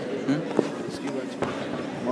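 Indistinct spectators' voices in a gymnasium, with two short sharp knocks, one about half a second in and one about a second and a half in.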